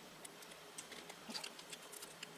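Faint light clicks and rustles of a card tag being handled and fitted into the jaws of a Crop-A-Dile eyelet-setting tool.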